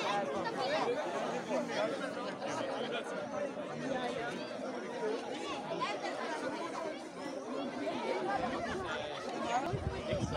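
Crowd chatter: many voices talking at once, overlapping with no single voice standing out.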